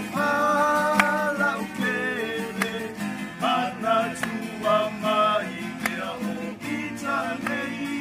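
A small group of men singing a song together, accompanied by two acoustic guitars strummed in a steady rhythm.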